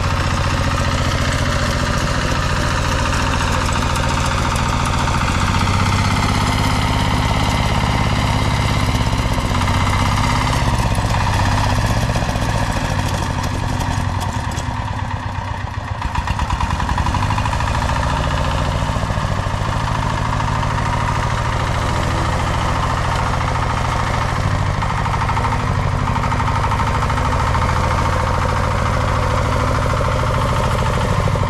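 A walk-behind power tiller's diesel engine running steadily, with a brief dip in level about halfway through.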